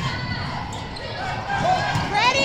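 Indoor volleyball rally in a large echoing gym: players' thumps and ball contacts on the court mixed with voices from players and spectators, with a sharper hit near the end.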